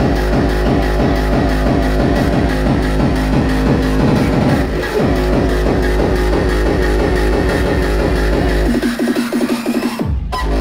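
Loud dubstep played over a club sound system, with heavy pulsing bass. Near the end the bass cuts out for about a second, then comes back in.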